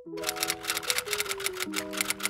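Rapid typewriter key clacks, a sound effect for on-screen text being typed out, over soft melodic background music.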